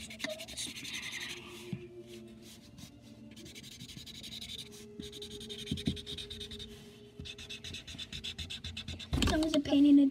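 Marker scribbling quickly back and forth on cardboard, coloring in checkerboard squares, in several runs of rapid strokes with short pauses between. A child's voice starts loudly near the end.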